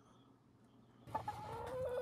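A low near-silent room tone for about the first second, then a chicken clucking, ending in one drawn-out call that falls in pitch.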